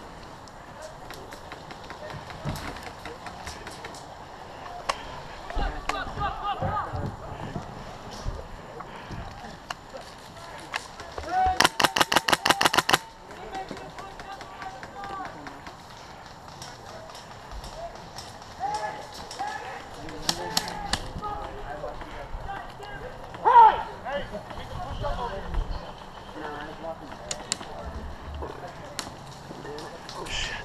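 A close airsoft rifle firing a rapid full-auto burst of about a dozen shots, lasting about a second and a half, a little under halfway through. Faint scattered pops of distant airsoft fire and far-off voices run through the rest.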